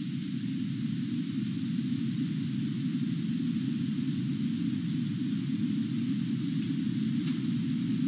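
Steady background hiss and low rumble with no speech, with one faint tick about seven seconds in.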